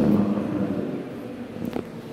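A voice trailing off in a large hall, leaving quieter murmuring room noise with a short click near the end.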